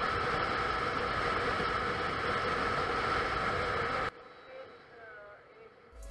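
Wind and engine noise of a Honda CBR150 motorcycle cruising on an open road, heard from a camera on the rider: a steady rush that cuts off suddenly about four seconds in, leaving a much quieter stretch.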